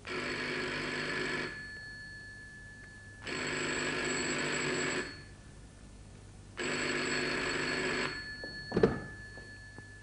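Telephone bell ringing three times, each ring about one and a half seconds long with a pause of similar length between rings, followed by a short knock near the end.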